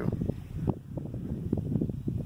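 Wind buffeting an outdoor microphone: a low, uneven rumble.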